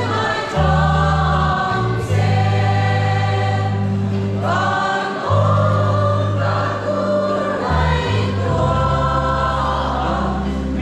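A mixed choir of young women and men singing in harmony, holding long notes over steady low bass notes that change every second or two.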